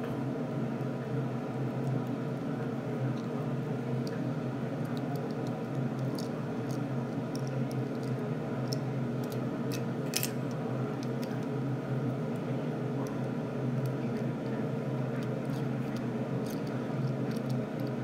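Small plastic toy car and its plastic pieces being handled: scattered faint clicks and rustles, with one sharper click about ten seconds in, over a steady background hum.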